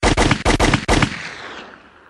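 A rapid burst of automatic gunfire, about nine shots in the first second, with the echo dying away over the next second.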